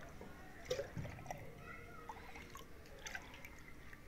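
Milk dripping and trickling off a steel ladle as it is ladled between pots, faint, with a few light clinks and taps about a second in and again near three seconds.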